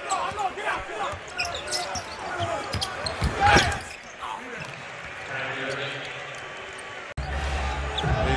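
Live basketball game sound in an arena: a ball bouncing on the hardwood, with many short sharp ticks and crowd voices. A louder swell of sound comes about three and a half seconds in, and the sound jumps to a louder, fuller crowd near the end.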